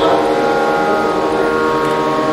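A wind instrument sounding one long, steady note, rich in overtones and without drums.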